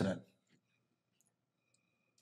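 A man's sentence ends, then near silence: quiet studio room tone with a few faint clicks.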